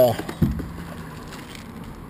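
Plastic parts bag being handled: a single light knock about half a second in, then faint rustling over low background noise.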